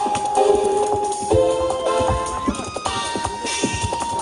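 Live jazz quartet of drums, piano, bass and trumpet playing: long held melody notes that change pitch a few times over a steady run of drum hits.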